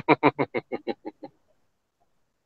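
A man laughing: a quick run of short 'ha' bursts, several a second, fading away after about a second.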